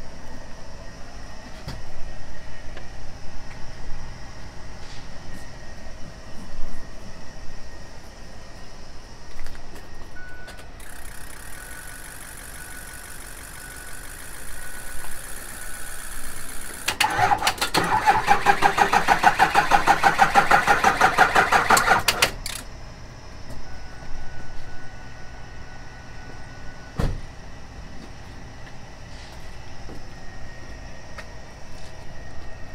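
Ford F-550's 6.0 diesel V8 cranking on the starter for about five seconds with a fast, even pulse, then stopping without firing: a no-start on dead batteries helped only by a jump pack. Before the cranking, a steady high whine for about six seconds.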